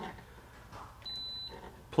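Water softener control valve (7500 Rev 2.5) giving one short, high-pitched electronic beep about a second in as it is plugged back in and powers up.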